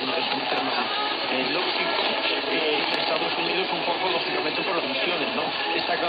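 Weak long-distance medium-wave AM broadcast on 1503 kHz heard through a Xiegu G90 HF transceiver: a faint voice from the station buried in steady hiss and static.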